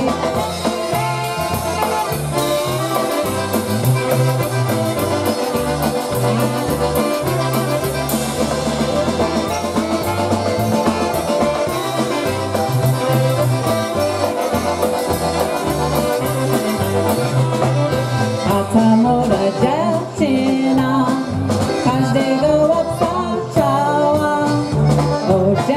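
Live polka band playing an instrumental passage: accordion, saxophone and trumpet over drums and bass, with a regular bouncing bass pulse.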